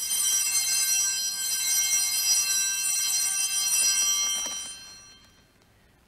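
A small altar bell (sanctus bell) struck once, giving a high, bright ring with many overtones that fades away over about five seconds. It marks the elevation of the consecrated chalice at the Eucharist.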